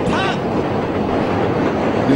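Steady outdoor background noise from a live recording, with a short voice sound right at the start.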